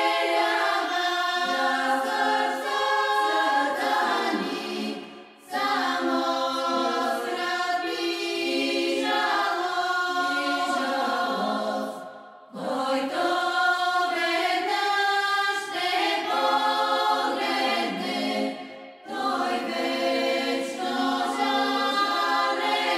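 Choir singing a cappella in four long phrases, with short breaks between them about every six to seven seconds.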